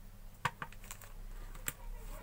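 A few light, irregular clicks and taps from a screwdriver and small iron parts being handled on a plastic bag.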